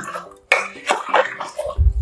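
Steel ladle stirring thick vegetable gravy in an aluminium pressure cooker, knocking and scraping against the pot in a run of short clinks. A low thump near the end is the loudest moment.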